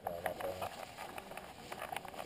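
Handling noise from a GoPro harnessed to a cheetah's back: scattered knocks, clicks and rubbing as the animal moves. A brief voice-like sound comes in the first half-second or so.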